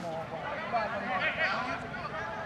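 Indistinct voices of players and onlookers shouting across a football pitch, with a louder, high-pitched call about halfway through.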